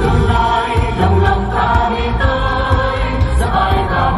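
Music: a choir singing a song over instrumental backing with a heavy bass, at a steady loud level.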